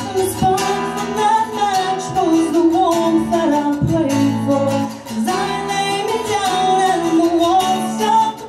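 A woman singing solo with her own strummed acoustic guitar accompaniment, in phrases with a short break about five seconds in.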